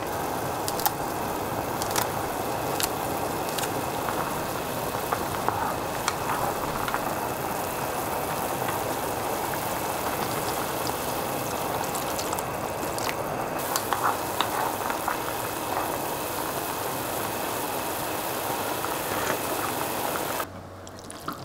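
Pot of beef rice-noodle soup broth at a rolling boil, bubbling steadily, with scattered light clicks.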